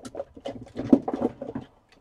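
Hands searching among craft supplies on a worktable: a run of irregular light clicks, taps and rustles, with the loudest knock about a second in.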